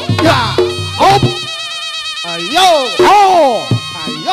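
Reog Ponorogo gamelan music: a slompret shawm holds a nasal, buzzy note with a wavering vibrato. Loud pitch-bending strokes join in the second half.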